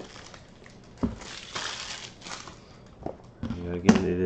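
A shrink-wrapped cardboard trading-card box being picked up and handled: plastic wrap crinkling, with a light knock about a second in and another near the end.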